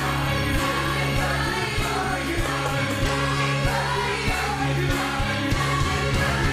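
Gospel choir singing full voice with a band, over a steady bass line and beat.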